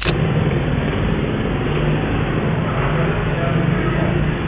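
A brief swish at the start, then muffled, low-quality street noise from surveillance footage: traffic and engine rumble with a person's voice in it.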